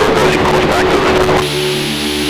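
Off-road Trophy Truck engine running hard under throttle, with voices mixed in. Near the end the sound settles into a steady held tone.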